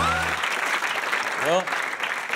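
Studio audience applauding. The tail of a music sting cuts off about half a second in.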